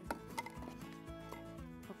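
Quiet background music, with a few light clicks and knocks as a plastic jump rope is set down into a box.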